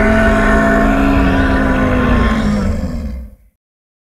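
Monster growl sound effect: a loud, rough, rumbling growl on a held pitch that sags slightly near the end, then cuts off suddenly about three and a half seconds in.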